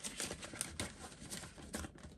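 A wad of banknotes being pushed into a clear plastic zip pocket in a binder and the pocket being handled: a quick run of crinkly rustles and small ticks, with sharper ones about halfway through and near the end.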